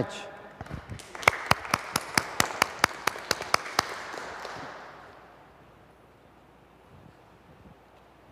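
Brief applause from a small seated audience: a light patter of clapping with one set of sharp, steady claps at about four or five a second standing out. It dies away after about four seconds.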